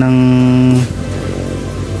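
A man's voice holding a drawn-out hesitation sound, a long 'nnng' at one steady pitch for nearly a second, then dropping away to quieter background sound.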